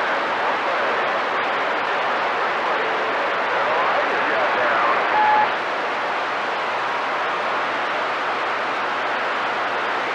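CB radio receiver on channel 28 hissing with steady band static between transmissions, with faint, weak voices barely showing through the noise. A short beep-like tone sounds about five seconds in.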